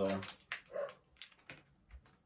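A few short, sharp crinkles from a chocolate bar's foil wrapper being handled, spread over the first second and a half.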